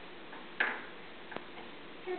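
Two sharp wooden clicks, about three-quarters of a second apart: a baby knocking the wooden pieces on the side panel of an activity cube.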